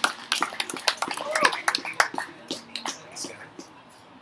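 A small audience clapping, with a few short shouts, the applause thinning out and dying away.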